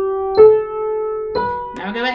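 Piano playing a C major scale one note at a time, right hand only, slowly at 60 beats a minute. Each note rings on until the next one is struck about a second later, and the notes climb step by step. A short vocal sound starts near the end.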